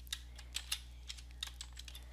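Computer keyboard being typed on: about half a dozen faint, quick keystrokes at an uneven pace as a short code is entered.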